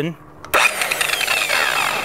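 Rotary buffer with a seven-inch wool cutting pad switching on about half a second in and spinning against a fiberglass hull, its whine falling slightly in pitch under load as it cuts compound into the faded, chalky gelcoat.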